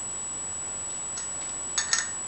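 A steel single-speed bicycle cog being worked onto the rear hub's splines: a faint click, then a quick cluster of light metallic clicks near the end as it seats, over a steady background hiss.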